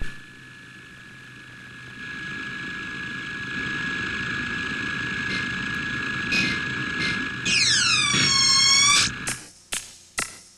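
Electronic music from a synthesizer: a steady high tone over a swelling wash of noise, then looping pitch sweeps near the end that cut off suddenly, followed by sharp percussive hits.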